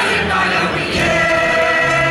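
Mixed chorus of men's and women's voices singing together in a stage musical, holding long notes that move to a new chord about a second in.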